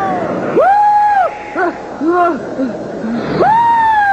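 A character's voice calling out without words: a long held call, a few short cries, then another long call that slowly falls in pitch.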